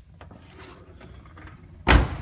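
A car door being shut: a single loud slam near the end, after a few faint handling clicks.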